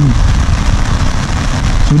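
Steady rain falling on an umbrella held overhead, an even hiss with a low rumble underneath.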